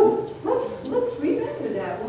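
A woman's voice speaking in short phrases.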